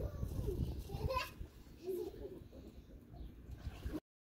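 Faint outdoor background: distant high-pitched voices over a low rumble, with a short high rising call about a second in.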